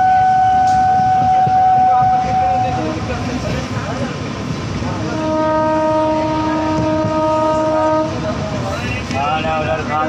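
A moving passenger train, heard from an open coach doorway: the steady rumble of the wheels on the rails, with the locomotive's horn held in two long blasts. The first blast is a single tone that stops about three seconds in; the second is a several-note chord from about halfway to near the end.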